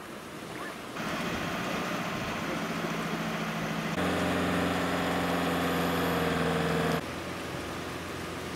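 Toyota pickup truck's engine running steadily under load while towing through wet sand and shallow sea water, a low, even hum that comes in loud about four seconds in and stops abruptly a second before the end. Before it, a fainter engine hum sits under surf noise.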